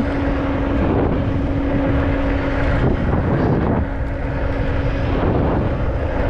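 Wind rushing over the microphone while riding an electric scooter at speed, with the steady hum of its electric motor underneath. The hum drops out briefly about three seconds in.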